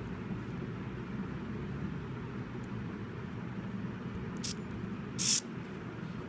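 Low steady background hum, with two brief scratchy noises about four and a half and five seconds in, the second longer and louder, as a power lead is plugged in to power up the receiver.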